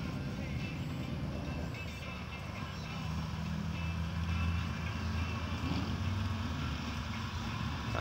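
A car engine running at a distance, a low steady sound that swells a little around the middle.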